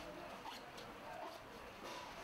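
Faint room sound with light rustling and a few small clicks from gloved hands wiping a resuscitation bag and its valve with wet gauze.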